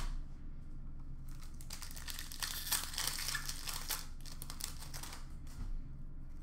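Glossy trading cards being shuffled and flipped through in the hands: a quick run of papery rustles and light clicks, busiest in the middle.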